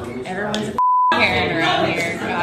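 A short censor bleep, one steady pure high tone of about a third of a second, about a second in, replacing a word in heated talking.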